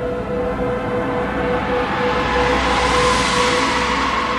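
Dark ambient soundtrack drone: a steady held tone with overtones. A rushing swell builds about two seconds in, peaks near three seconds and then eases off, like a cinematic transition whoosh.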